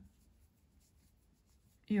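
Faint scratchy rustle of a crochet hook pulling yarn through, as double crochet stitches are worked.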